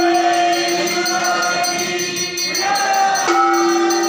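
Devotional aarti singing by a group of voices, with long held notes, over a fast, steady jingling of small metal percussion.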